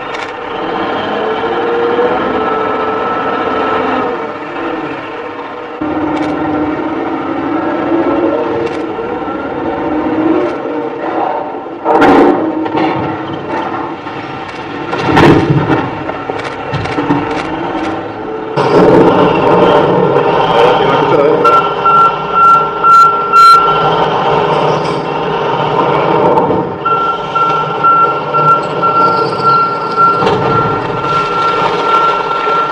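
A heavy wheel loader's diesel engine working hard as it pushes a granite block off a quarry bench. Near the middle come two heavy thuds a few seconds apart as rock topples and lands. A thin high tone comes and goes in the last third.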